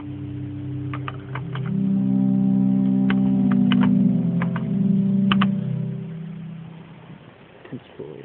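Pipe organ on its 16-foot Bourdon stop sounding a low held chord, with notes added about a second and a half in; it is released around six seconds in and dies away in the church's reverberation. A few sharp clicks sound over the held notes.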